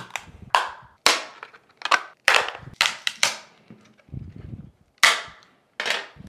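Plastic case of a power bank cracking and snapping as it is pried apart with a metal scraper: about nine sharp snaps spread over a few seconds, as its clips give way.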